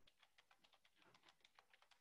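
Faint typing on a computer keyboard: quick, irregular key clicks, about five or six a second.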